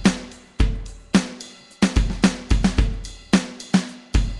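GarageBand Smart Drums live rock kit playing a rock beat of kick, snare and cymbals from an iPad. The hits are spaced out at first and come faster and busier from about two seconds in.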